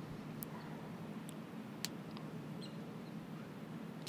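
Hushed golf-course ambience while a player stands over a putt: a low steady hum with a few faint, short high chirps or ticks scattered through it.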